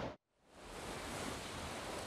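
A moment of dead silence at an edit cut, then a steady rushing hiss of ocean surf on the beach fades in and holds.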